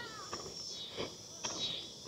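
A drawn-out, wavering animal call fades out just after the start. Then come a few soft footsteps on a paved path and a faint high-pitched hum.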